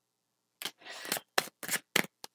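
Tarot cards handled in the hands as one is drawn from the deck: a brief sliding rustle about a second in, then a few sharp card snaps and flicks.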